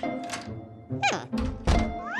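Cartoon sound effects over light background music: a short gibberish vocal "yeah" falling in pitch about a second in, then a heavy low thud shortly after.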